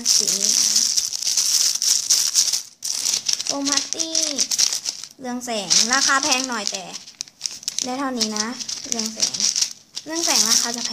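Clear plastic bags of small foam beads crinkling and rattling as fingers press and handle them, with a steady crackle that is strongest in the first few seconds. A young girl's voice comes in several times over it.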